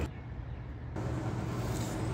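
Steady low hum under faint background noise.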